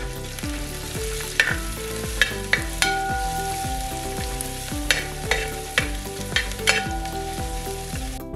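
Sliced ginger and chopped garlic sizzling steadily in hot oil in a steel pan. A steel ladle stirs them, knocking and scraping against the pan in sharp clinks about seven times.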